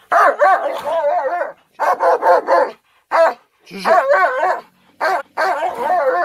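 German shepherd puppy whining and yelping in about six high, wavering bursts with short gaps between them, as it faces a cornered raccoon.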